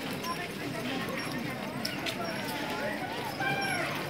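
Crowd chatter: many people's voices overlapping at once, with no single voice standing out.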